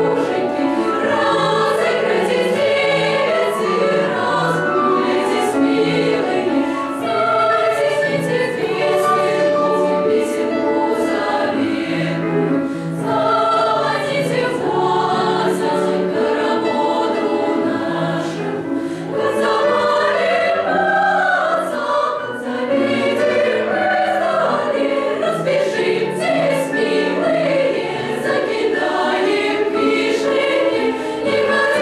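A children's choir singing a piece in several parts, continuously.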